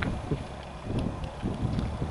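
Freight train of covered hopper cars rolling past, a low rumble with a few faint ticks, mixed with wind buffeting the microphone.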